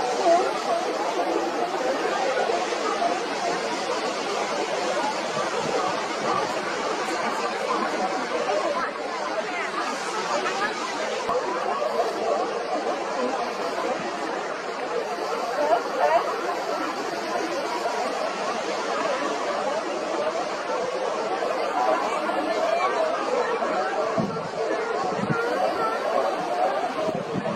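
A large colony of sea lions hauled out on rocks, many animals barking and calling at once in a dense, unbroken chorus.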